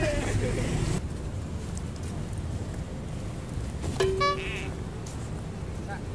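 Urban outdoor ambience with a steady low traffic rumble. About four seconds in, a car horn gives one short, flat-pitched toot.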